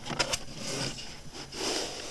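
Handling noise from a handheld camera being turned: two or three sharp clicks at the start, then two rustling scrapes of the device rubbing against hand or clothing.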